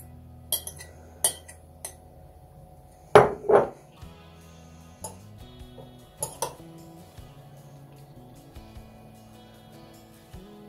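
A metal fork clinking against a glass jar and a plate as pickled green beans are shaken out of the jar, with two louder knocks a little after three seconds in. Soft background music with held notes runs underneath.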